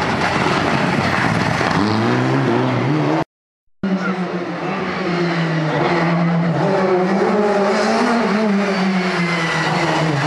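Rally car engines at full cry. A Mitsubishi Lancer Evolution's revs climb over the first few seconds, then the sound cuts off abruptly. After the break a second rally car, a Peugeot 306, approaches with its revs rising and falling through the gears, then climbs sharply in pitch as it accelerates past near the end.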